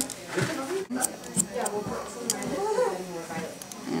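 A few short, sharp snips of hairdressing scissors cutting hair, under quiet talk.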